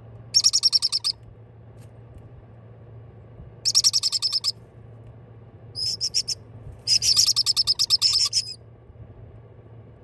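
Baby parrot chicks calling in bursts of rapid, high pulsing chirps, four bursts of under a second to about a second and a half each, the last the longest.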